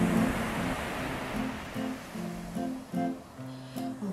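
Acoustic guitar playing an instrumental passage of a folk shanty, plucking a repeating pattern of low notes. At the start a rushing wash of noise sits over it and fades away over the first two seconds.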